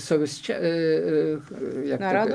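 A man's voice: a few words, then a drawn-out hesitation sound held on one pitch for about a second, then more speech.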